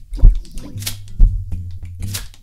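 Electronic music played live from a keyboard synthesizer: a drum beat with a deep kick about once a second and a sharp snare-like hit between kicks, over a held synth bass note in the second half.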